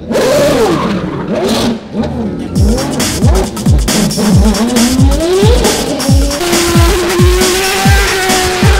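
Open-wheel racing car engine revving, its pitch rising and falling sharply. About two and a half seconds in, drum and bass music with a steady kick-drum beat comes in and dominates.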